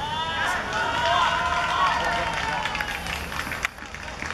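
Several voices shouting and cheering at once as a goal goes in, loudest in the first couple of seconds, then dying down near the end.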